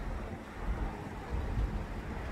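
Wind rumbling on the microphone, an uneven low buffeting.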